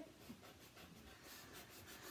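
Faint scratching of a pencil drawing on paper, a run of short strokes in the second half.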